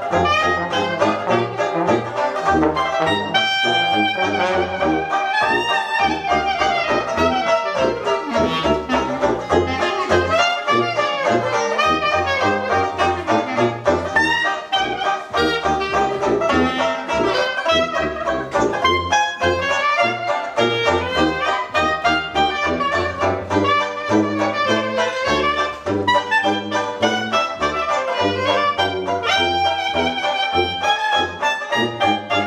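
Traditional jazz quartet playing: clarinet and trombone over a strummed banjo and walking bass tuba. Partway through, the trombone drops out and the clarinet carries the lead over the banjo and tuba.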